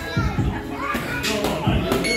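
Boxing gloves landing on focus mitts a few times, as dull thuds near the start and near the end, over voices chattering in a large gym.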